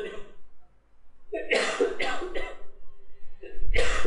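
A person coughing several times in short fits, a few coughs at a time.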